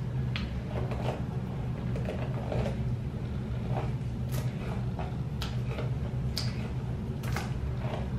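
Hairbrush strokes through a section of coily 4c natural hair: short scratchy swishes about once a second, over a steady low hum.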